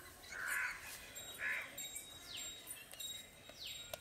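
Birds calling in the background: two short calls in the first second and a half, then two falling whistled calls later on.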